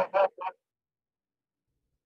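A man's voice trailing off in two short syllables over about half a second, then dead silence with no room sound at all, as on a noise-gated video call.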